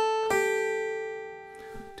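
Acoustic guitar pull-off on the high E string: the note fretted at the fifth fret rings, then about a third of a second in the finger pulls off to sound the note at the third fret, slightly lower. That second note rings on and slowly fades.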